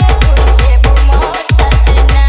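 Loud DJ trance and tapori dance remix: fast electronic drum hits over a heavy sub-bass, which cuts out for a moment about one and a half seconds in.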